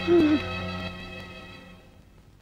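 A man's short, choked sob, over a held chord of background film music that fades away.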